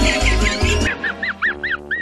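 Muttley the cartoon dog's signature wheezing snicker: a run of short rising-and-falling wheezes, about five a second, at first over background music that drops out about a second in.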